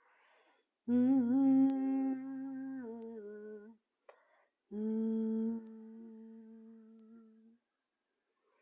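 A woman humming two long held notes, each after a short audible breath in. The first starts about a second in with a small waver in pitch before settling; the second starts near five seconds and fades away before the end.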